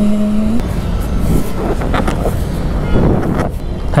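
Motor scooter riding in traffic: wind rushing over the handlebar-mounted microphone, with the scooter's engine and the noise of passing traffic underneath.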